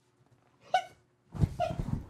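A man's laughter: a short high-pitched squeal about a second in, then a second burst of laughter.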